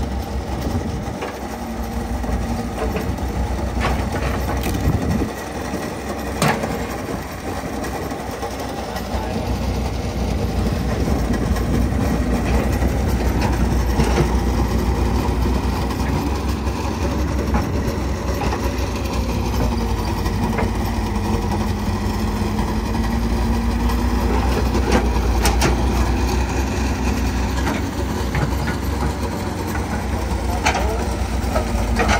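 Compact hydraulic excavator digging: its diesel engine runs under load, growing louder about ten seconds in, with a hydraulic whine that rises and falls and a few sharp knocks from the bucket and linkage.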